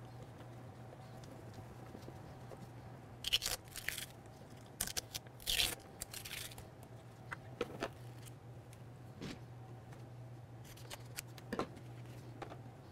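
Masking tape being pulled off a painted body panel in several short tearing rips, grouped about three and five seconds in, then a few softer rustles and clicks. A low steady hum runs underneath.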